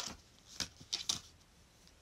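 Paper art cards and a booklet being handled and lifted out of a metal steelbook case: a few soft rustles and light taps, the clearest around the start and the middle.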